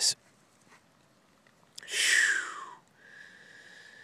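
A man's breath blown out hard for about a second, with a whistly tone falling in pitch, followed by a faint steady high tone near the end.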